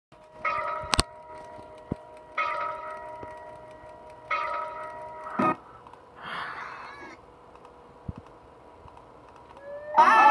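Video audio playing from computer speakers: a short musical chord-like sound of several steady tones, repeated three times about two seconds apart, with sharp clicks as videos are switched. A brief noisy snatch of sound comes about six seconds in, and then it falls quiet.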